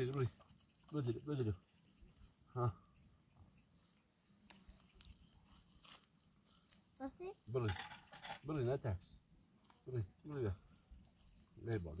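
Short spoken phrases with quiet gaps between them; no other sound stands out above them.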